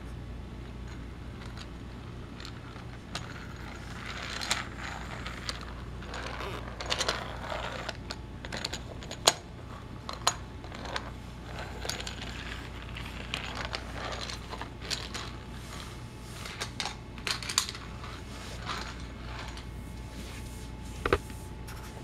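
A small die-cast Thomas toy engine pushed by hand along plastic toy track, with scattered light clicks and rattles as it rolls and is handled, one sharper click about nine seconds in.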